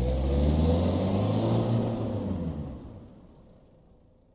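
A car driving past: its engine swells in and then fades away over about three seconds.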